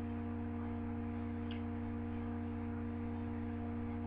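Steady electrical hum: a low drone with a few faint held tones above it, unchanging throughout.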